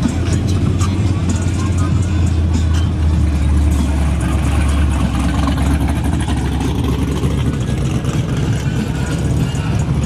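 The V8 of a 1970 Buick Electra 225 running at a slow roll, a deep, steady low engine note that drops slightly lower about halfway through as the car moves away, with voices in the background.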